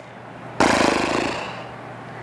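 A woman blowing a long breath out through fluttering lips, a horse-like lip trill, starting about half a second in and fading away over about a second.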